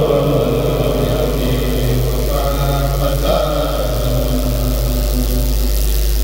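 A Kourel, a Murid religious chant group, singing a xassaid in unison with long held notes, over a steady low hum.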